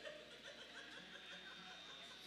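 Near silence, with a faint chuckle.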